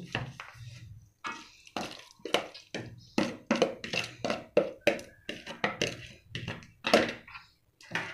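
A hand squelching marinated chicken pieces through thick besan (gram-flour) batter in a bowl: a quick run of wet squishes and slaps, about three a second, starting about a second in.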